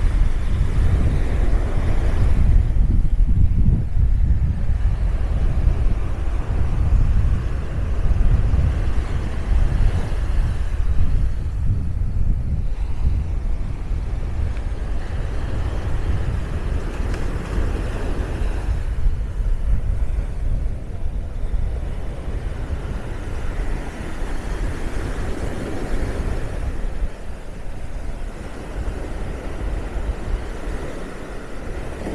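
Wind buffeting the microphone with a constant low rumble, over surf breaking and washing up the sand in swells that rise and fall every several seconds.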